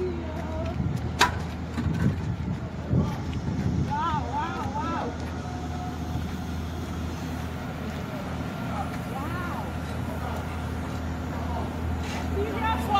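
Steady low engine hum from construction machinery. There is a sharp click about a second in, and faint voices twice.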